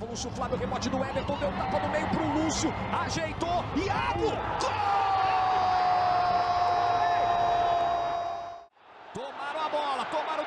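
Football TV broadcast audio: a commentator calling the play over steady stadium background noise. He breaks into a long, drawn-out goal cry held for about four seconds as the ball goes in, and it cuts off suddenly at an edit near the end.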